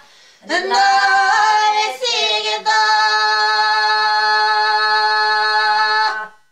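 Three elderly women singing a traditional folk song together, unaccompanied. After a short pause they sing a phrase, break briefly, then hold one long final note.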